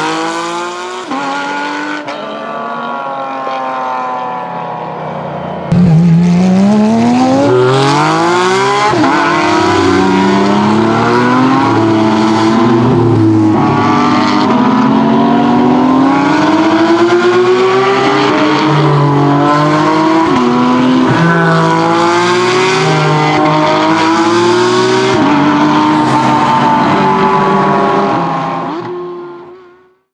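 Porsche 718 Cayman GT4 RS Clubsport race car's naturally aspirated 4.0-litre flat-six. It pulls away with a rising note and shifts up about a second in, then fades. From about six seconds in it is suddenly much louder and close, revving up and down repeatedly, before fading out at the end.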